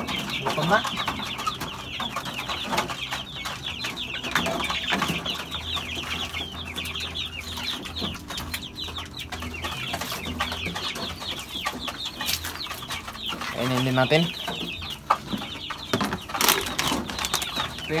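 Chickens and chicks calling in their coops: a dense run of short, high peeps and clucks that thins out after the first several seconds.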